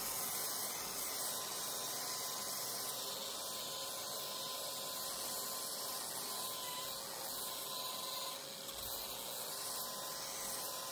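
Electric random orbital sander running steadily against the painted plywood of a wooden boat hull, sanding the paint off, with a vacuum hose drawing dust from the pad: a steady hiss with a faint whine.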